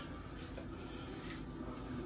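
Quiet room tone with a steady low hum and a couple of faint, brief handling sounds.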